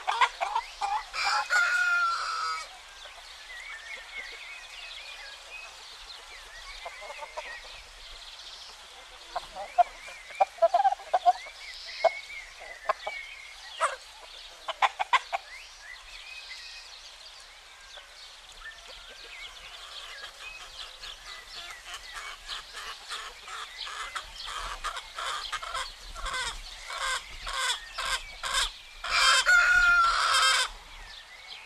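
Chickens clucking, with a rooster crowing about a second in and again at the very end. Between the crows the clucks come in scattered sharp bursts, then quicken into a rapid run over the last ten seconds.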